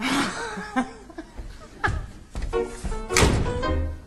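Theatre pit-orchestra underscoring with several thuds and knocks over it: a sharp knock about two seconds in and a louder noisy thud a little after three seconds.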